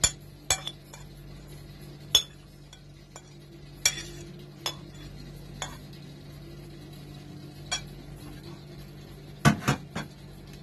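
Metal spoon clinking and tapping against a steel grinder jar and a ceramic plate as grated coconut is spooned in, one sharp clink every second or so, with two louder knocks near the end.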